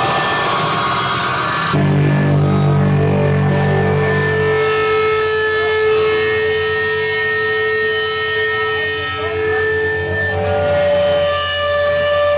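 Loud live noise-rock band: a dense wall of noise cuts off abruptly about two seconds in, giving way to a sustained electric bass drone under long, steady held tones from amplified instruments.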